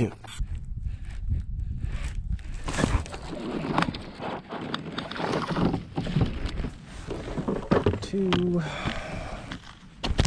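Handling noise on a fishing kayak: rustling and knocks as a bass is played at the side and lifted aboard, over a low rumble in the first couple of seconds. A short hummed voice sound comes about eight seconds in.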